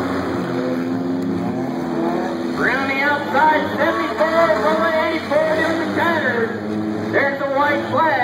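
Several figure-8 race car engines running on a dirt track, rising in pitch as they rev. From about a third of the way in, an announcer's voice calling the race is mixed over them.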